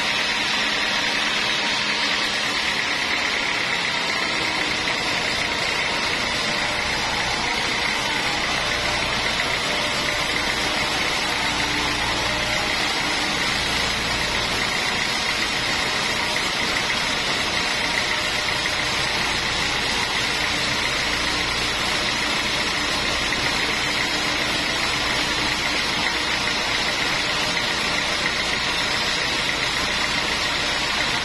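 Sawmill band saw running steadily and ripping a large mahogany timber lengthwise: a continuous high saw noise over the engine driving it, whose deeper note comes in a few seconds in as the blade takes the cut.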